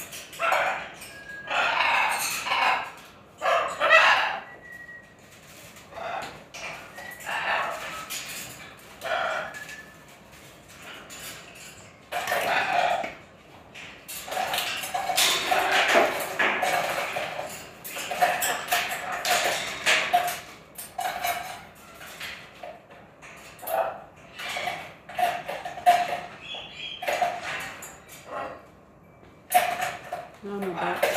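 Blue-and-gold macaw squawking and calling over and over in loud, uneven bursts, the most sustained stretch about halfway through: an agitated bird.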